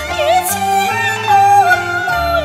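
Cantonese opera music: a melody line that wavers and slides into long held notes over a steady instrumental accompaniment.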